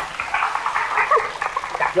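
Several people laughing and giving short high-pitched squeals and whoops at once, in many overlapping bursts.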